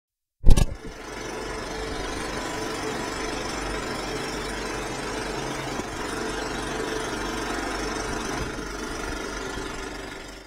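A loud click about half a second in, then a small machine running with a steady mechanical clatter over a low hum.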